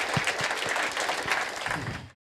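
Audience applauding: dense, steady clapping that thins out slightly near the end.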